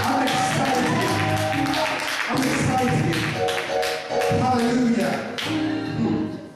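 Electronic keyboard playing held chords, with sharp percussive taps marking a beat through it.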